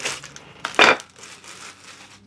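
Bamboo salad and pasta servers being handled and set down: short bursts of rustling and clatter, the loudest a little under a second in, then fainter handling noises.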